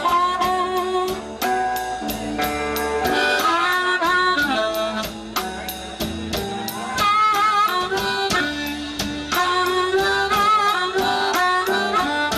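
Live blues band playing an instrumental passage: an amplified harmonica, cupped with a microphone, plays bending lead lines over electric guitar, bass and a steady drum beat.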